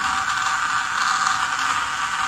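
Small DC gear motor driving a conveyor belt, running steadily with a constant gear whine.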